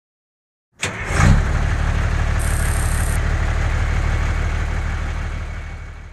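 An engine starts suddenly about a second in, then runs steadily with a low hum and fades out toward the end.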